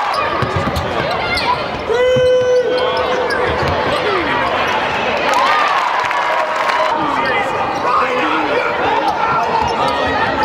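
A basketball bounces on a hardwood court during live play, with sneakers squeaking and voices around the arena. A brief steady tone sounds about two seconds in.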